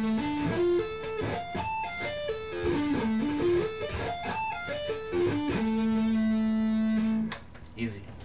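Electric guitar playing a D minor sweep-picked arpeggio slowly, one note per string: up from a low A, hammered on to D, through F, A, D and F to a high A, then back down. It runs up and down twice, then ends on a held low A that stops about seven seconds in.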